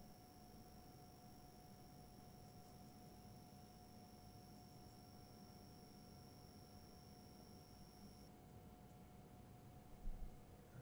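Near silence: room tone with a faint steady hum and a faint high whine that stops about eight seconds in.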